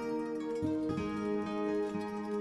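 Instrumental background music of plucked string notes, with new notes sounding every half second or so.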